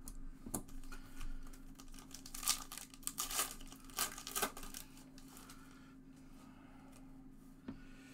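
Foil wrapper of a Topps Gold Label baseball card pack torn open by hand: a cluster of sharp crackling, crinkling tears in the middle. A few light clicks of packs and cards being handled come before and after.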